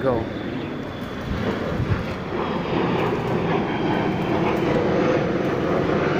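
Airplane passing overhead: a steady rushing engine noise that builds gradually louder.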